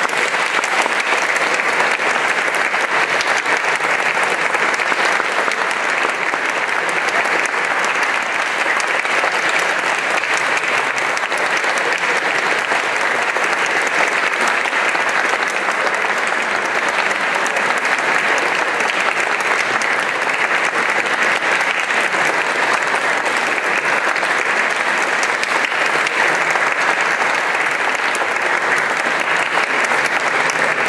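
Audience applauding steadily and without a break.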